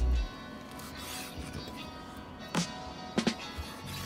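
Quiet background music, with three short knocks from a chef's knife cutting through crisp waffled hash browns onto a wooden cutting board, one a little past halfway and a close pair soon after.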